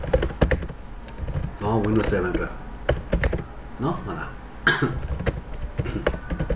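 Computer keyboard typing: runs of quick key clicks with short pauses between them.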